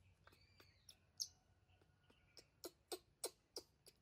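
Soft, quiet clicks and smacks of a baby monkey being spoon-fed fruit, coming faster, about three a second, in the second half, with a faint high squeak about half a second in.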